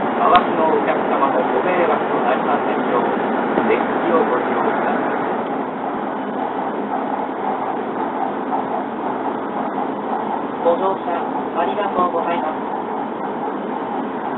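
Steady running noise inside the cabin of a W7 series Shinkansen at speed, with an on-board PA announcement voice heard over it in the first few seconds and again about eleven seconds in.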